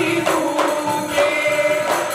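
Group of men singing a Goan ghumat aarti devotional song in unison, holding long wavering notes, over the beat of ghumat clay-pot drums and jingling hand cymbals.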